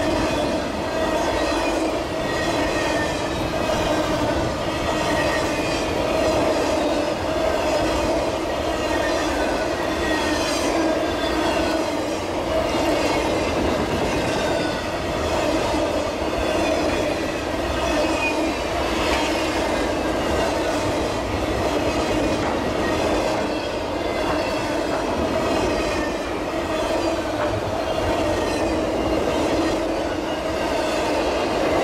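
Autorack freight cars of a long train rolling steadily past, with continuous wheel-on-rail noise and faint high squealing tones that drift in pitch.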